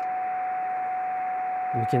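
Steady single-pitch CW beat tone over a background hiss of receiver noise from a Yaesu portable transceiver in CW mode on 144.012 MHz. The tone is a test-generator signal received through a 10 GHz transverter and a home-made low noise amplifier, heard clearly above the noise.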